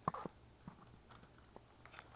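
Gift-wrapping paper crinkling on a small wrapped box as a baby grabs and shakes it: a sharp rustle at the start, then a few faint scattered crinkles and taps.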